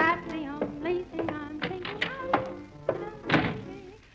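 A dance band plays a lively number, sustained wavering horn notes over drum strikes. It ends on a loud final hit about three and a half seconds in and dies away.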